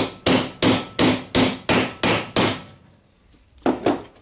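Metal hammer striking a drill chuck to seat its anvil back inside: about eight quick metal knocks, roughly three a second, then a pause and one more knock near the end.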